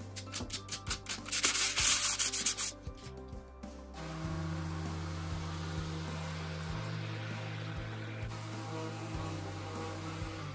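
Hand sanding with a sanding sponge over carved wood: short rasping strokes, about four a second, that quicken and grow louder, then stop a little before 3 seconds in. About a second later an electric random orbital sander starts and runs steadily on a flat panel, quieter than the hand strokes, until near the end.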